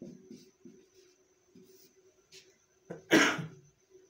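A man coughs once, loudly, about three seconds in. Before that come faint, scattered strokes of a marker writing on a whiteboard.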